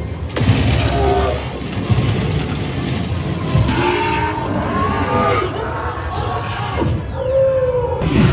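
Haunted-house attraction soundtrack played loud: dense music and sound effects over a steady low rumble, with voice-like cries in the middle and a short held tone near the end.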